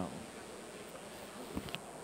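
Quiet room tone of a large hall with a steady high-pitched whine, and a faint knock about a second and a half in.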